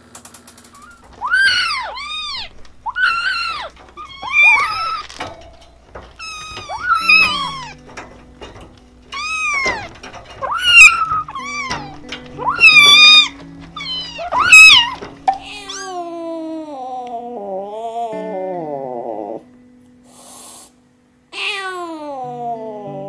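Kittens meowing: about a dozen short, high meows that rise and fall, some of them loud, over soft background music. After a brief dropout, another kitten meows just before the end.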